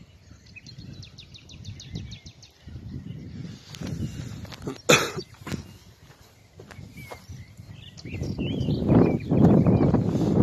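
Rustling and handling noise as a phone is moved through dry branches and litter, with a sharp snap about five seconds in and louder low rustling building near the end. A bird's rapid ticking trill sounds near the start, and faint chirps come near the end.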